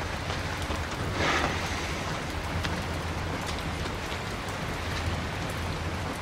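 Steady outdoor background ambience: an even hiss with a low rumble beneath it and no voices.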